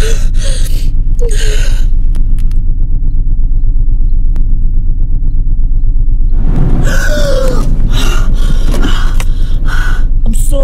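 Gasping, distressed breaths, first through about the first two seconds and again from about six and a half seconds in, with a brief pitched whimper among the later ones. Underneath runs a loud, steady, pulsing low drone.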